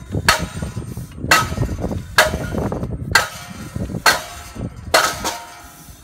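Hammer striking a forcible-entry door-breach training prop, seven hard metallic blows about one a second, each ringing briefly.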